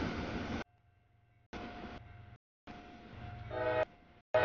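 Freight train rumbling past a grade crossing, heard in short chopped pieces that start and stop abruptly, with a faint steady crossing-signal tone in the quieter gaps. About three and a half seconds in, an approaching diesel locomotive sounds its multi-chime horn briefly.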